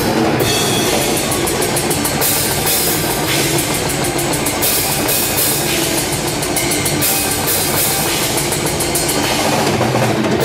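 A drum kit played live in a loud heavy metal song, the drums up front over the rest of the band. Runs of rapid cymbal strokes come and go over a dense, steady wall of sound.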